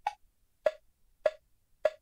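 Play-along software's metronome count-in: four wood-block-like clicks at 103 beats per minute, one bar of 4/4, the first pitched higher as the accented downbeat.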